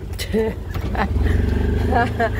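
A small motorcycle engine running under the rider, getting louder about a second in as it pulls away, with a steady high whine over it.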